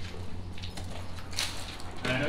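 A few soft scuffing footsteps on a gritty floor, the clearest about one and a half seconds in, over a steady low rumble.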